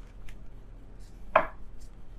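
A single sharp knock on a tabletop a little past the middle, with a few faint clicks around it, as tarot cards are handled on the table.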